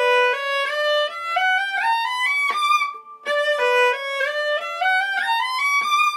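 Solo viola playing a quick rising run of separate stepwise notes up the A string in treble-clef range, climbing about an octave with shifts of position. The run is played twice, with a brief pause about three seconds in.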